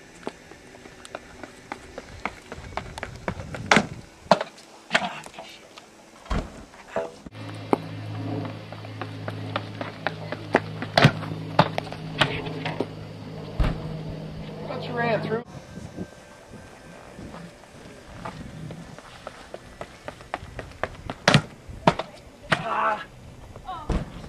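A pole vault run-up and jump: a string of sharp footfalls and knocks on the runway, then a steady low hum for about eight seconds in the middle, with indistinct voices near the end.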